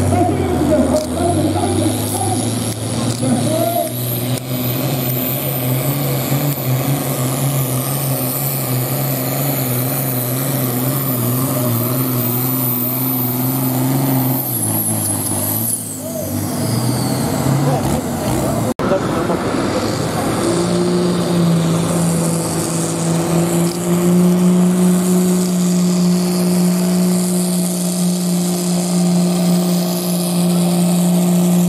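Diesel farm tractors pulling a weight sled, one after the other. The first engine works steadily under load with a high whine above it, then drops away about halfway through. After a break, a second tractor's engine takes up a higher, steady note as it starts its pull.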